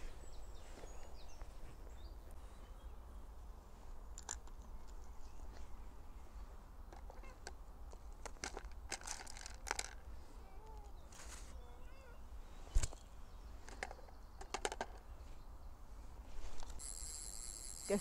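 Quiet outdoor pond-side ambience: a steady low wind rumble with scattered small clicks, one sharper click about thirteen seconds in, and a few faint bird chirps.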